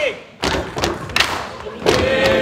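Wooden sticks and crutches knocked on a wooden floor, about four separate thumps over two seconds, with voices in the background.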